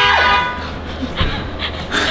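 A car horn sounding as a steady, many-toned honk, set off remotely from the phone app, cuts off about a third of a second in. A low steady hum and faint background music follow.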